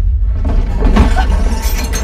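Horror-trailer score and sound design: a deep, steady low rumble under dense, noisy sound effects, with a few sharp hits.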